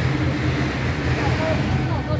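Small truck engine running at low speed, a steady low hum, with people talking around it.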